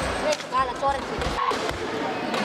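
Sparring in an echoing sports hall: scattered thuds of kicks and bare feet on the mats and padded chest protectors, mixed with short shouts and voices.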